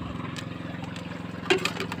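Outrigger fishing boat's engine running steadily with an even low hum. Short bits of a voice come near the end.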